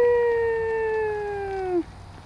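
A child's voice holding one long, steady vocal call for nearly two seconds, sliding slightly lower in pitch and breaking off just before the end.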